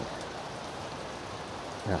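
Steady outdoor background hiss, even and without distinct events, in a pause between speech.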